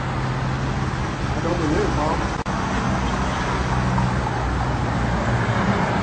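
Car engine running with a steady low hum over street traffic noise; a person's voice is heard briefly about two seconds in.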